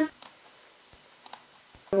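A few light, scattered clicks of a computer mouse, two of them close together a little past the middle.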